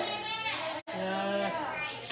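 Voices making drawn-out, wavering vocal sounds in prayer rather than clear speech. The sound cuts out for an instant just under a second in.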